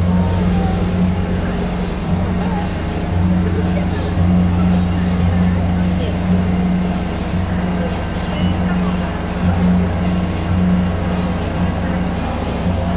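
Crowd chatter, many voices talking at once, over a loud low mechanical hum that swells and drops back every second or two.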